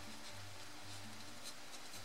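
Faint scratching of a fine liner pen on watercolour paper as it dabs small lines and dots of masking fluid.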